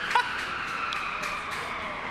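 Project Liftoff's spinning weapon whining at high speed, its pitch sinking slowly.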